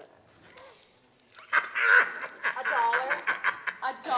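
A person's wordless, high-pitched voice with a wavering pitch, starting about a second and a half in and continuing to the end.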